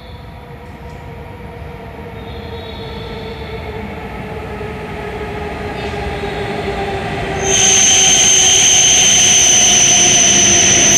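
An E7/W7-series Hokuriku Shinkansen train arriving along the platform. Its running sound grows steadily louder with a slowly falling hum. About seven and a half seconds in, the front reaches the microphone and the sound jumps to a loud rushing with a high, steady whine.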